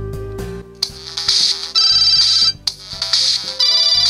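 Samsung smartphone alarm going off about a second in: a loud, high-pitched electronic alarm tone in repeating bursts with short gaps between them.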